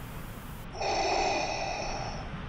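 A long drag on a cigarette: one drawn breath that starts a little under a second in and lasts about two seconds.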